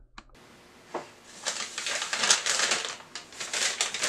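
Paper-bag puppets rustling and crinkling as they are jostled and knocked about. After a single tap about a second in, a rapid, irregular patter of paper noise runs on to the end.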